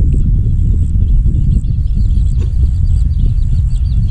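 Steady low rumble of wind buffeting the microphone in open marshland. From about a second and a half in, a small bird or insect chirps rapidly above it, about five high chirps a second.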